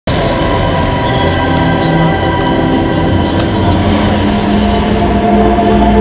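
Projection-mapping show soundtrack over loudspeakers: deep, sustained electronic drones with heavy low rumble, and a new low tone entering about four seconds in.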